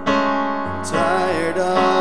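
A song sung to a Yamaha digital piano: chords struck at the start and again just before a second in, with the voice coming in over the held chords.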